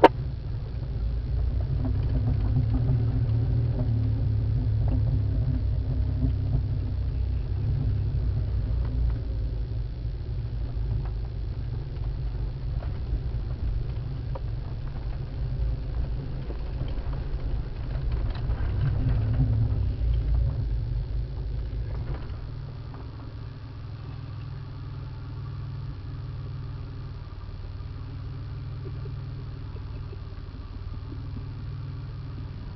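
A four-wheel drive's engine running with a steady low rumble as the vehicle crawls along a muddy off-road track. It is louder for the first twenty-odd seconds, swelling twice, then drops to a quieter, even, idle-like running.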